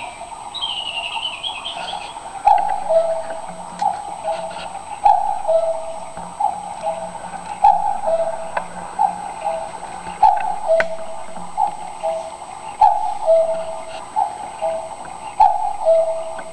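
Quartz cuckoo clock calling the hour. Its two-note cuckoo call, high then low, repeats about once every 1.3 seconds from about two and a half seconds in, some eleven times in all.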